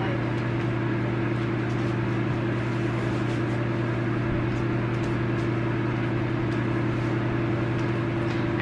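Steady mechanical hum: a low, even drone with a second, higher steady tone above it, unchanging throughout, with a few faint light clicks.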